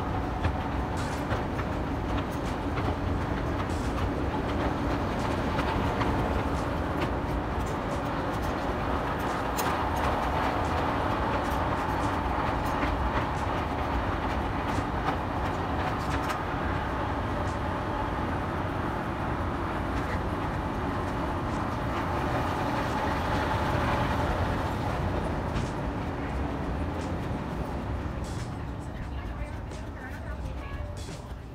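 Escalator running: a steady mechanical hum and rumble with faint clicking from the moving steps. It fades over the last few seconds.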